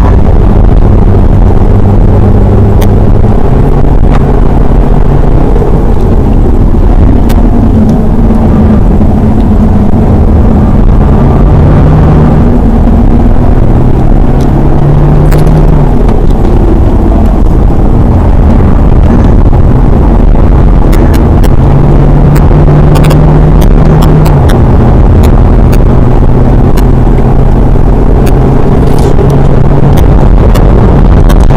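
A BMW 120d's four-cylinder turbodiesel engine heard from inside the cabin while lapping a circuit, its note rising and falling with throttle and gear changes over steady road and tyre noise. Scattered ticks come in the second half.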